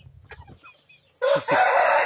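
A rooster crowing: a loud, harsh crow that breaks in suddenly a little over a second in, after a quiet start.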